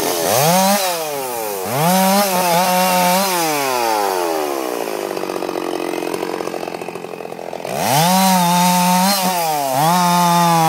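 Two-stroke chainsaw revved to full throttle in quick blips and held there, then dropping back to a lower idle for a few seconds before revving up hard again near the end.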